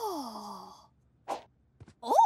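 A cartoon character's long, falling sigh with a high shimmering tone layered over it, fading out within the first second. A brief soft noise follows a little after.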